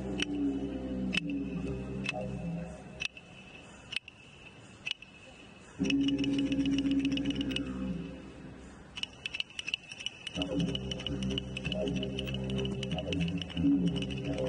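Didgeridoo drone with a stack of overtones, stopping about three seconds in and returning near six seconds, stopping again near eight seconds and returning after ten. Sharp clicks keep a beat of about one a second through the first half, then turn to fast clicking in the second half.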